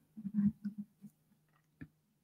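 Quiet handling noises and two clicks, the second sharp near the end, as a phone is handled on a magnetic wireless charging pad.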